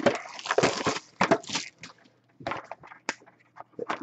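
A plastic-wrapped cardboard box of hockey cards being handled: irregular crinkling and crackling with a few sharp clicks.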